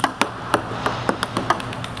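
Ping-pong ball bouncing off a plywood ramp and the concrete floor, about a dozen light clicks at uneven spacing.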